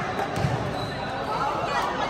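Spectators chattering in a large gym hall, with a basketball bouncing on the court floor once, about half a second in.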